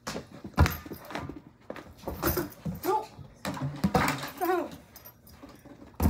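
A dog whimpering in short cries that rise and fall, with knocks and thumps in between.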